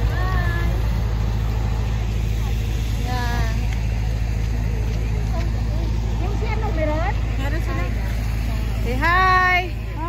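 A steady low rumble outdoors, with people's voices in short calls a few times over it, the loudest near the end.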